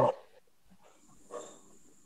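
A man's voice over a video call trailing off at the end of a sentence, then a quiet pause broken by one brief faint sound about a second and a half in.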